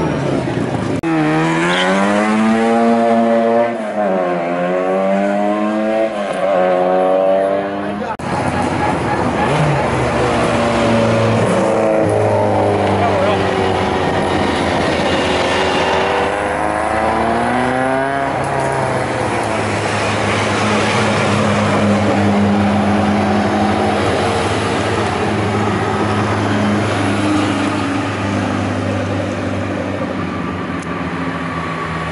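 Zastava Yugo race car's four-cylinder engine revving hard as it launches from the start line and accelerates, the pitch rising, dropping once at a gear change, then rising again. After that, several race cars' engines running at low revs as they drive slowly past in a line.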